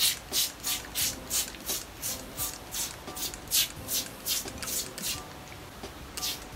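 Trigger spray bottle misting rice water onto wet hair, pumped over and over at about three squirts a second, each a short hiss; the spraying stops about a second before the end.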